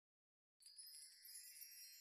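Silence, then from about half a second in a faint, high-pitched tinkling of chimes: the quiet opening shimmer of background music.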